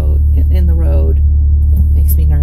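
Steady low rumble of a car idling while stopped, heard from inside the cabin, with a brief bit of a woman's voice about half a second in.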